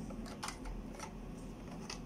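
A few short, light clicks from small kitchen items being handled, over a low steady hum.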